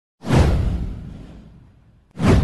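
A produced whoosh sound effect with a deep low rumble under it. It starts sharply a moment in, sweeps down in pitch and fades away over about a second and a half.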